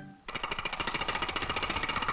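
Rapid, even rattling sound effect, about a dozen beats a second, starting a quarter of a second in after the band music breaks off.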